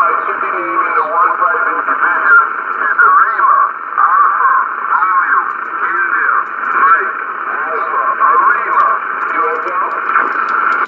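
A distant station's voice received over HF single-sideband through the speaker of a Yaesu FT-840 transceiver: narrow, band-limited speech over a steady hiss. It is readable, rising and falling in strength with fading (QSB).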